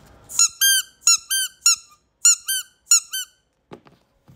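Yellow rubber duck squeeze toys squeaking: about nine short squeaks in quick succession, each rising then dropping in pitch, as the ducks are squeezed by hand. A couple of soft knocks follow near the end.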